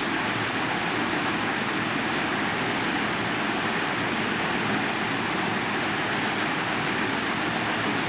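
Steady, even hiss of background room noise with no breaks or clicks.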